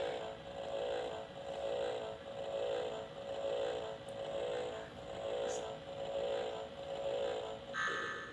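Novelty lie-detector shock game running its electronic analysing tone: a warbling drone that swells and fades a little more than once a second. Near the end it gives a brief higher beep as its verdict lights come on.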